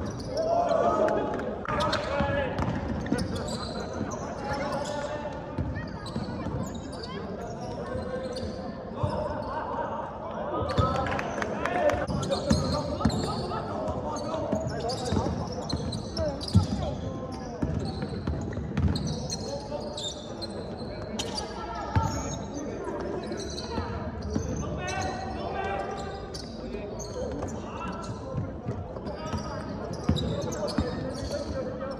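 A basketball being dribbled and bouncing on a hardwood court during live play, with players calling out to each other, in a large, near-empty gymnasium.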